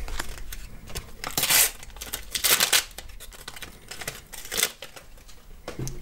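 A shiny Panini sticker packet being torn open and its wrapper crinkled, in short tearing bursts about a second and a half and two and a half seconds in, and a smaller one near the end.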